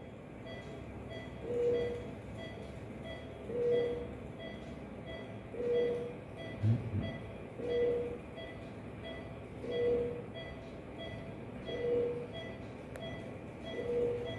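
Self-built peristaltic pump running while it drives infiltration solution through the needle: an even mechanical rhythm with a short tone and a swell about every two seconds, and light ticks about twice a second as the rollers turn.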